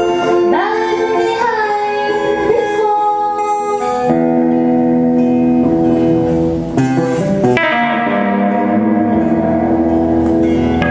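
Live folk song: a woman singing over acoustic guitar for the first few seconds, then the voice drops out and the accompaniment carries on with held notes and a few strums.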